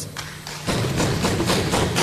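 Members of parliament thumping their desks in approval, a dense clatter of many hands on wood starting under a second in.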